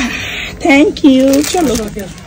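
A young child's voice making short, high-pitched speech-like sounds, with light rustling in between.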